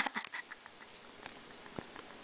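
The tail of a man's laughter dying away in the first half-second, then quiet room sound with a few faint clicks.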